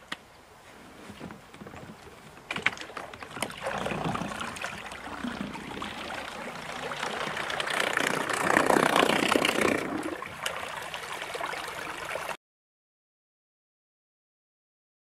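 Water splashing and rushing around the hull of a small boat moving across a river, building to its loudest a little past the middle, then cutting off abruptly to silence near the end.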